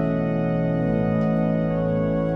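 Pipe organ playing sustained chords, the upper notes held steady while the bass notes move underneath.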